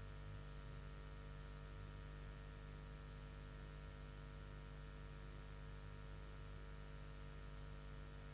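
Steady, faint electrical mains hum with a low buzz and a light hiss, unchanging throughout; no music comes through.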